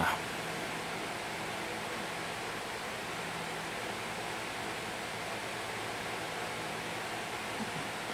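Steady background hiss with a faint low hum, and no distinct sound event.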